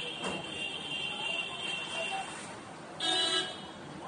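A vehicle horn gives one short toot about three seconds in, the loudest sound here. Before it a steady high-pitched drone fades out around the middle, and a single sharp smack comes just after the start.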